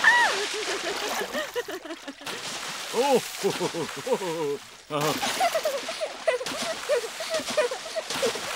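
Cartoon water-splashing sound effects, with cartoon voices squealing and laughing over them. There is a high squeal at the start, then bouts of laughter, while the splashing stops briefly twice.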